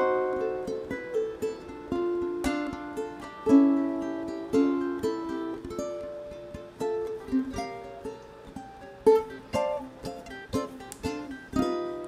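Solo ukulele fingerpicked, a melodic passage of single notes and small chords that ring and die away, with a few stronger plucked accents.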